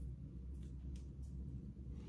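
Quiet handling sounds: a few faint soft ticks and rustles as hands work cloth hockey tape around a hickory golf club's grip, over a steady low hum.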